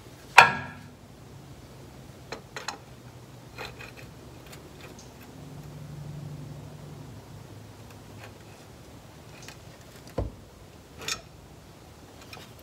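Adjustable wrench clinking against the vehicle speed sensor on the transfer case as it is fitted and worked to unthread the sensor: one sharp clink about half a second in, then scattered light ticks.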